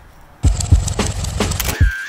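A BMW boxer-twin motorcycle engine cuts in suddenly about half a second in and runs loud with a rapid, uneven popping.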